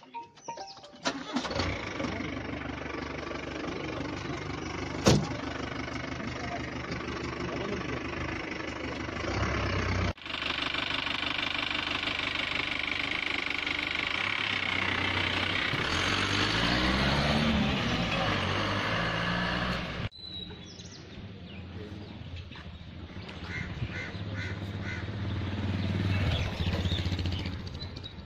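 A vehicle engine running among a crowd of people talking, the engine rising in pitch a few times in the middle as it revs. The sound cuts off abruptly twice, and the last part is quieter crowd chatter.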